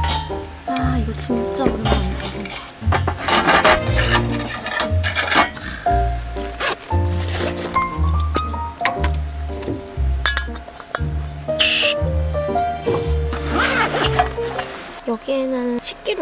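Insects giving a steady, high-pitched trill over background music with a regular bass line, and occasional metal clinks as the camping stove and cookware are handled.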